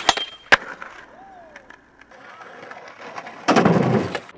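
Skateboard tricks on concrete: two sharp cracks of the board close together near the start, then the wheels rolling. Near the end comes a louder rough scrape lasting about half a second, the board grinding along the edge of wooden pallets.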